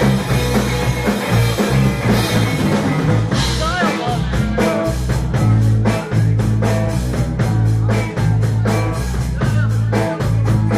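A live rock band playing electric guitar, bass guitar and drum kit, with a fast steady drum beat through the second half.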